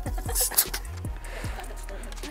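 Background music with a short hiss about half a second in, as the pump is pulled off the bicycle valve in the pressurised plastic bottle rocket's cap, and a few light handling knocks.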